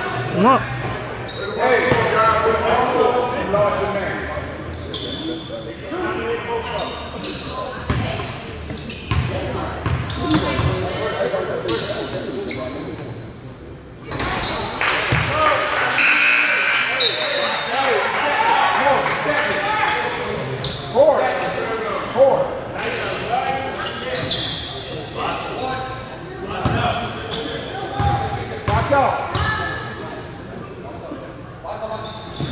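Basketball bouncing on a hardwood gym floor, with players' voices echoing through the gym.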